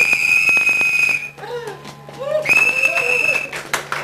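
Two long, steady, shrill whistle blasts of about a second each, the second starting about a second after the first ends, with faint voices in the gap.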